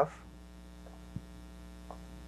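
Steady electrical mains hum on the recording, with a faint short tap about a second in.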